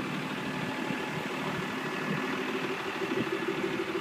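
Diesel engine of a New Holland LW110 wheel loader idling steadily, an even low drone with no change in speed.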